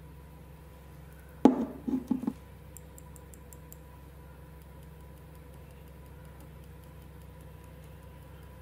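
Makeup tools handled on a wooden tabletop: a sharp knock about one and a half seconds in, then three quicker lighter knocks, as a brush is put down and another picked up, followed by a few faint light ticks.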